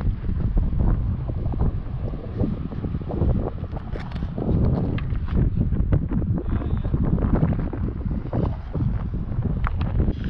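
Wind buffeting the camera's microphone: a loud, gusting low rumble that rises and falls throughout, with scattered faint clicks.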